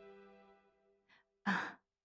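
Soft background music fades out, then a person gives one short, breathy sigh about a second and a half in.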